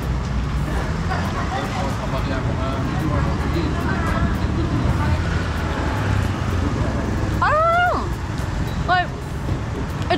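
Steady road traffic rumbling along a town street. About seven and a half seconds in, a short pitched sound rises and falls, with a briefer one a second later.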